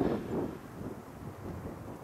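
Wind buffeting the camera microphone: a low, uneven rumble that rises and falls in gusts.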